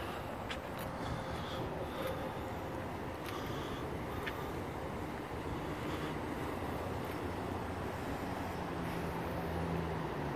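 Steady street traffic noise outdoors, with a vehicle engine's low hum growing nearer about eight seconds in.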